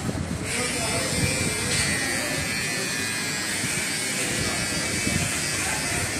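Electric hair clipper switched on about half a second in, then running with a steady high-pitched buzz as it cuts hair.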